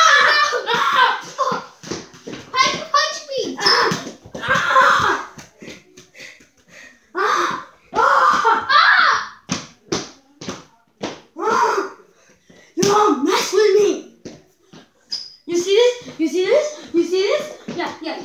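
Children's voices shouting and chattering in short bursts, with a ball bouncing a few times around the middle.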